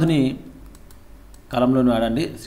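A man speaking in Telugu, broken by a pause of about a second in which faint clicking is heard before he speaks again.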